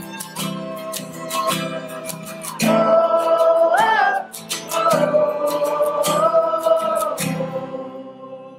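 Acoustic folk band playing live: strummed acoustic guitars with a violin and long held melody notes over them. The strumming stops near the end and the music fades as the song closes.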